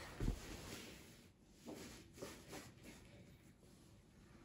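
A soft thump just after the start, then a few faint rustles and light taps: bare hands, knees and feet moving on a rug as a gymnast kicks up into a headstand.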